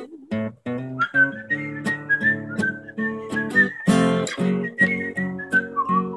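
A man whistling a melody over his own strummed acoustic guitar chords; the whistling comes in about a second in, a high, slightly wavering line above the steady strums.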